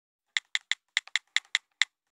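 A quick run of about nine short, sharp clicks, irregularly spaced and like keys being typed on a keyboard, one of them faint.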